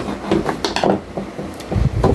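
Electrical plug being pulled out of a plastic power strip, with a few short clicks and knocks of plastic being handled.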